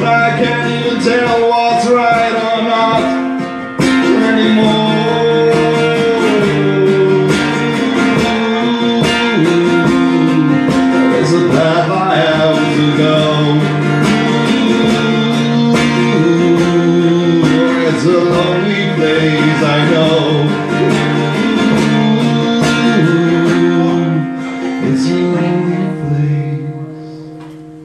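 Acoustic guitar strummed in a live solo performance, chords changing steadily, with the performer's male singing voice mixed in; the sound drops briefly just before four seconds in.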